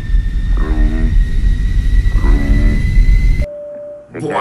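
Rocket-launch sound effect at the end of a countdown: a heavy low rumble with a thin whine slowly rising in pitch and three short pitched calls over it. It cuts off suddenly about three and a half seconds in, leaving a brief steady beep.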